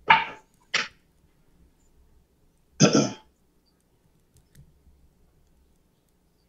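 A man clearing his throat: twice in the first second, then once more, louder, about three seconds in.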